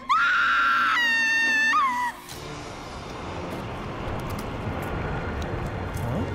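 A woman's long, high-pitched scream in two held notes lasting about two seconds, then a low rumble that slowly grows louder.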